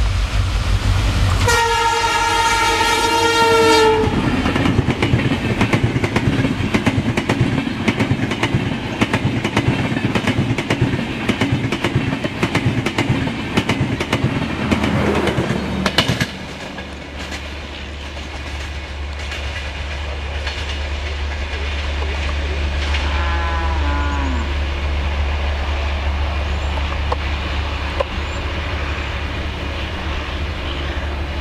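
A WDP4 diesel locomotive sounds a long multi-tone horn blast about two seconds in, then the express train rushes past with rapid clickety-clack of wheels over the rail joints. This cuts off suddenly about halfway through, leaving a steadier low rumble of the train moving away and a short, fainter horn note later on.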